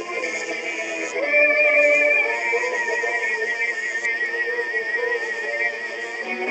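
Music with a high, wavering vibrato tone that comes in about a second in and is held for about four seconds over lower notes.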